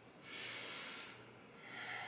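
A woman's soft, audible breathing through the nose and mouth while holding a yoga stretch: one breath starting about a quarter second in and lasting most of a second, then a second, lower-pitched breath beginning near the end.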